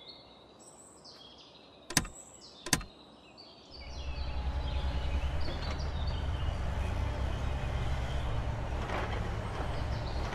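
Cartoon sound effects: faint bird chirps, two sharp clicks about two and three seconds in, then a steady low engine-like rumble from about four seconds on.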